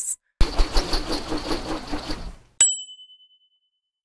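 An intro sound effect: about two seconds of busy mechanical clatter, then a single bright bell ding that rings out for about a second.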